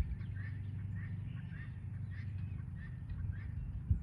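Small birds chirping faintly and repeatedly over a low steady hum, with a single click just before the end.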